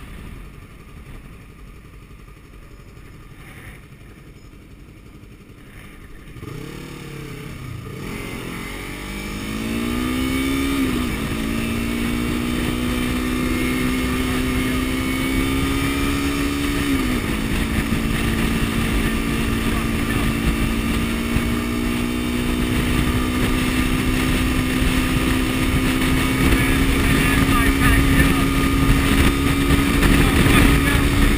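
Sport motorcycle engine pulling away from low speed: after a few quiet seconds the engine note climbs in pitch, drops twice as the rider shifts up, then holds a steady, slowly rising drone as speed builds. The sound grows louder throughout, with rushing air at the microphone.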